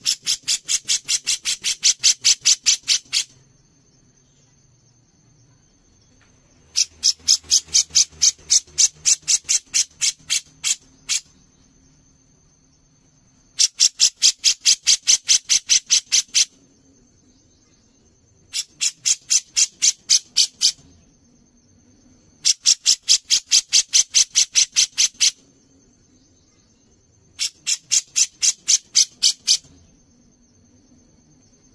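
Grey-cheeked bulbul (cucak jenggot) giving its harsh rattling chatter in six bursts of rapid notes, several a second, each burst two to three seconds long with short pauses between.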